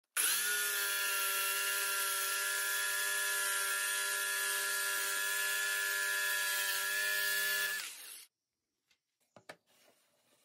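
Electric jigsaw cutting across a pine board, its motor running at a steady pitch for nearly eight seconds, then winding down as it is switched off. A couple of faint knocks follow near the end.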